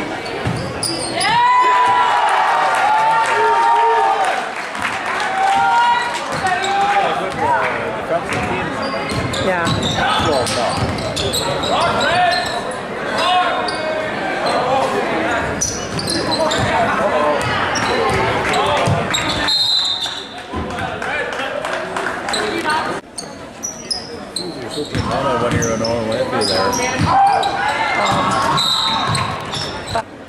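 A basketball dribbling and bouncing on a hardwood gym floor during a game, with spectators' voices shouting and cheering throughout, all echoing in the hall. A short high referee's whistle sounds about two-thirds of the way through, stopping play for a foul.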